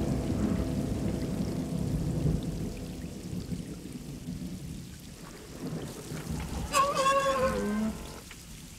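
Steady rain falling on a swamp, with a low rumble under it that fades away over the first few seconds. Near the end, R2-D2 gives a short electronic whistle that bends downward.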